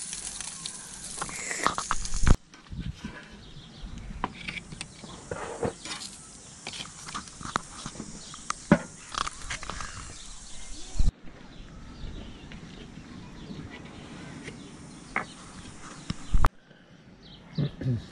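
Crayfish tails sizzling on a gas barbecue grill, cut off abruptly about two seconds in. After that, quieter stretches of scattered clicks and faint voices.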